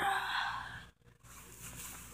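A person's breathy sigh trailing off the end of a spoken word and fading out within the first second, followed by a short gap and faint low background noise.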